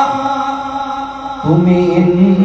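A man's unaccompanied voice chanting Urdu devotional verse about Karbala into a microphone, holding a long note that fades away. About one and a half seconds in, he takes up a new, lower held note.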